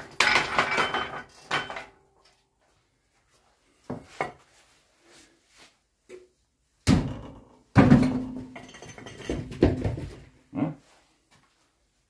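Hard knocks and clattering of metal tools working under the front of a car, coming in bursts. The busiest stretch comes in the second half, where one strike leaves a short low ring.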